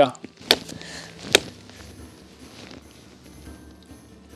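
Two sharp chops of a hatchet into a stick of wood held upright off the snow, about a second apart, the second louder. Faint background music comes in afterwards.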